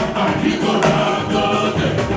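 Live jùjú band music: several voices singing together over the band.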